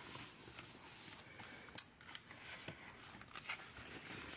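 Faint paper rustling and light handling noises as the pages of a thick hardcover sticker book are smoothed and turned, with one sharp click a little under two seconds in.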